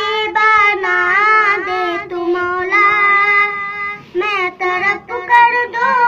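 A young boy singing a nasheed solo, holding long notes that waver and bend in melismatic ornaments, with a brief pause for breath about four seconds in.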